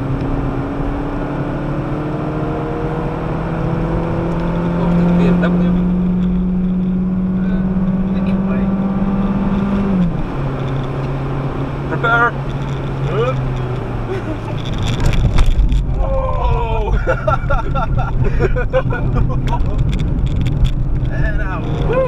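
Citroën DS3's 1.6-litre petrol engine heard from inside the cabin under hard acceleration, its pitch rising steadily for about ten seconds and then dropping suddenly as the four-speed automatic shifts up. A few seconds later the engine eases off and a heavier road rumble takes over.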